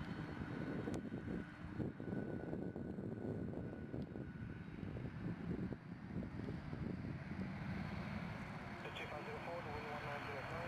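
Jet engines of an Air Canada Rouge Boeing 767 at takeoff power during the takeoff roll: steady engine noise with a high whine that fades over the last few seconds.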